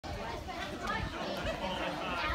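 Chatter of several voices talking over one another, with no single voice standing out.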